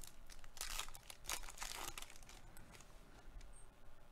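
Plastic wrapper of a baseball card pack being torn open and crinkled by hand: a run of short, faint rustles over the first couple of seconds, then softer handling as the cards come out.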